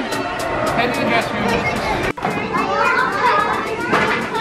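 Children's voices chattering and calling out, with background music carrying a steady beat underneath; the sound briefly drops out about halfway through.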